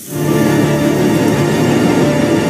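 Background music that comes in just after the start and holds at a steady, loud level, a dense sustained texture of held tones.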